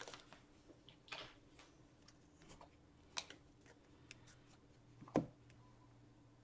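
Faint, sparse clicks and rustles of trading cards and their torn foil pack being handled on a table, with a slightly louder tap about five seconds in.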